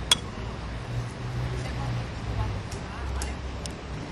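An egg cracked with one sharp tap on the rim of a small plastic cup, followed by a few faint clicks as the shell is pulled apart, over a steady low rumble.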